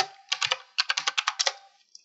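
Computer keyboard being typed on in a rapid run of about a dozen keystrokes, a password being entered at a login prompt. The run stops about a second and a half in, with a couple of faint clicks near the end.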